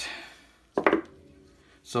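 Two Hummingbird Bronc rotary tattoo pens, the V7 and the V10, set down on a paper-covered table, with one sharp knock about a second in.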